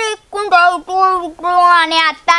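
A child singing a short phrase over and over in a high voice, two or three held syllables a second.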